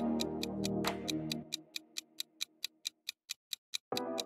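Clock-like ticking sound effect of a countdown timer, about four to five even ticks a second. Background music plays under it and cuts off about a second and a half in, leaving the ticks alone.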